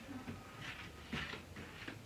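A few soft footsteps on a tiled floor, about one every half second or so, over a faint low hum.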